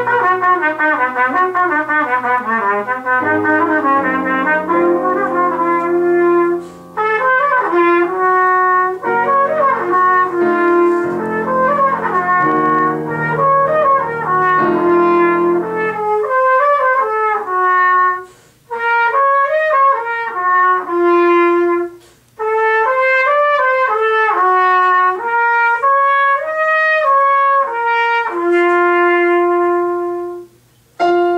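Trumpet playing a solo piece: quick runs of notes at first, then longer held notes broken by short breath gaps, ending on a long held note. Lower piano accompaniment sounds under it until about halfway, then drops out.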